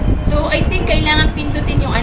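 Indistinct voice over a steady low rumble of background noise.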